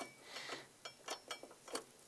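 Faint clicks and light taps of metal on metal as a motorcycle brake pad is slid into its caliper and onto the caliper carrier, about half a dozen spread over two seconds.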